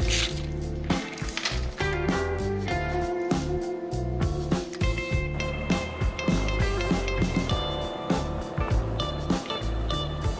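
Background music with a stepping bass line and melody notes that change every fraction of a second.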